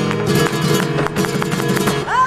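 Flamenco guitar playing fast strummed chords, punctuated by a quick run of sharp percussive strikes several times a second.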